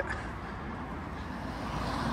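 Road traffic noise: a steady hiss of car tyres and engines from the road ahead, growing a little louder near the end.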